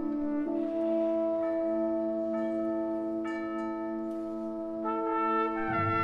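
Symphonic wind band playing a slow passage of long held brass chords that change every second or two; deeper low notes join near the end.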